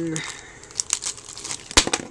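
Thin clear plastic bag crinkling as it is pulled open and the toy is taken out, with one sharp knock near the end.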